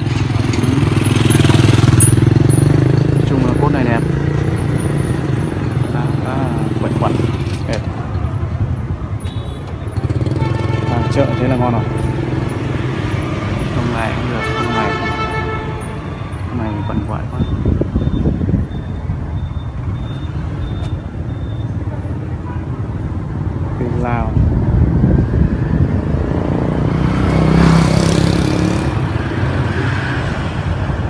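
Motor vehicle engines running past, swelling louder a few times, with indistinct voices of people talking in the background.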